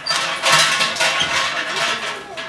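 Japanese shrine bell (suzu) jangling loudly as its hanging rope is shaken, a continuous metallic rattle.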